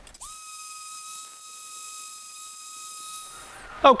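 A steady, high-pitched whistle-like tone that starts a moment in, holds one pitch for about three seconds, then stops, with a faint hiss above it.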